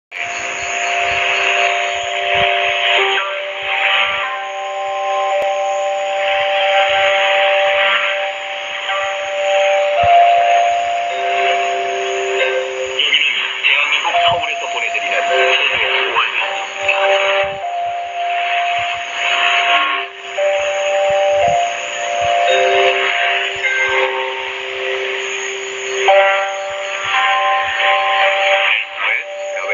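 Shortwave AM reception on an Icom IC-R75 receiver: a slow melody of long held notes under steady hiss, with small crackles of static and a few brief fading dips.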